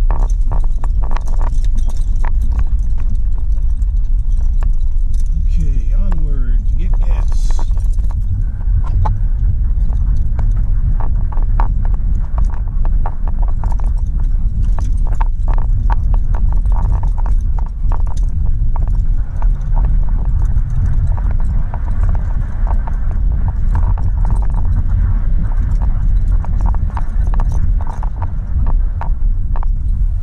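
Car driving, heard from inside the cabin: steady low engine and road rumble with frequent small clicks and rattles. About five to seven seconds in, the engine note rises as the car accelerates.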